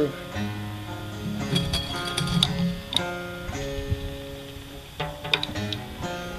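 Strings of a vintage S.S. Stewart five-string banjo twanging as the instrument is handled and cleaned: several separate plucks, each left to ring for a second or so, with a few light clicks.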